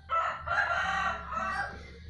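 A loud crowing animal call, starting abruptly and lasting about one and a half seconds.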